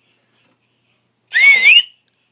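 Plush talking parrot toy playing back a sound in its high, sped-up voice: one short, wavering, whistle-like note about a second in.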